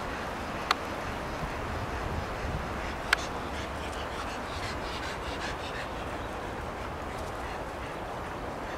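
Hooded crow close to the microphone, calling quietly, with two sharp clicks, one about a second in and one about three seconds in.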